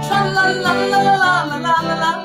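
A woman singing a wordless 'la la' phrase in long held notes over strummed acoustic guitar chords.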